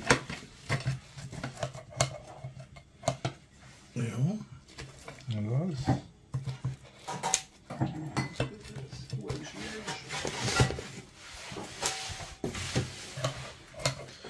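Scissors snipping through a Neapolitan pizza's crust, with a series of sharp clicks as the blades close and knock against the plate beneath.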